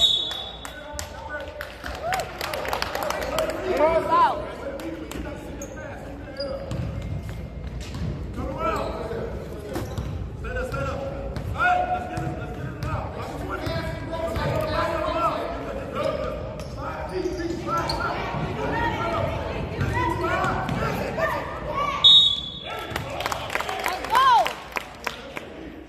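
Youth basketball game in an echoing gym: a basketball dribbling on the hardwood floor, sneakers squeaking, and spectators talking throughout. A referee's whistle blows briefly at the start and again near the end.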